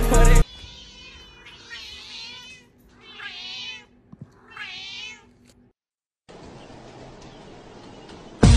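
A house cat meowing three times, each meow about three-quarters of a second long and wavering up and down in pitch like a short spoken phrase.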